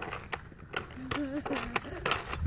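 A short, wavering hummed voice sound about halfway through, over a few light clicks and a low, steady rumble.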